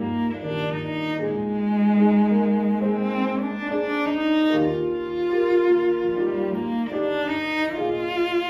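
Two cellos and a piano playing a chamber arrangement. The cellos bow a sustained, singing melody with vibrato over the piano accompaniment.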